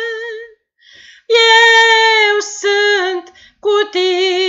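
A woman singing a slow hymn solo and unaccompanied, holding long notes with vibrato. She breaks off for a breath about half a second in, resumes after about a second, and steps down in pitch across a few notes with short breaks near the end.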